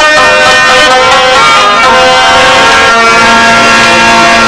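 Instrumental passage of Pashto folk music: a harmonium's reedy chords held steady, with a low note joining about three seconds in.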